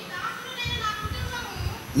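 Faint, high-pitched children's voices talking in the background.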